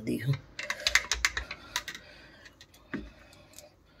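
Ice cubes dropped into a plastic glass of sattu drink, clinking against the glass and a steel spoon in a rapid run of small clicks for about two seconds. A few sparser ticks follow, then a single low knock about three seconds in.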